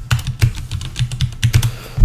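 Computer keyboard typing: a quick, uneven run of keystrokes that stops shortly before the end.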